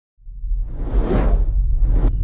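Logo-intro sound effect: a deep rumble comes in just after the start, and a whoosh swells to a peak about a second in, then fades away.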